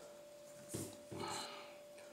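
A person sniffing twice through the nose, a short sharp sniff about three quarters of a second in, then a longer one, smelling the perfume. A faint steady hum sits underneath.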